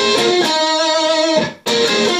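Gold-top Les Paul-style electric guitar playing a short lick on the fourth string at the 15th and 13th frets. The lower note is held about a second and stops about halfway through, and a second pass of the phrase starts near the end.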